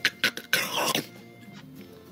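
A man making joint-cracking sounds, a few quick clicks and cracks, then a hard swallow about half a second in, over soft background music.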